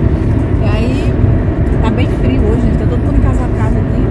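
Steady low road and engine rumble inside the cabin of a moving car, with short bits of talking over it.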